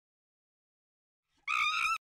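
Silence, then about one and a half seconds in a short, high-pitched tone with a slight waver that lasts about half a second and cuts off abruptly: an end-logo sound.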